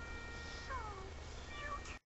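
A high-pitched cartoon voice giving a falling, meow-like cry about two-thirds of a second in, and a short pitched call near the end, over held music notes.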